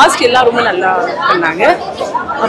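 Speech: a woman talking, with chatter of other voices around her.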